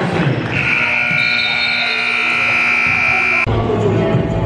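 Gym scoreboard buzzer sounding one long, steady blast of about three seconds that stops play, then cutting off sharply.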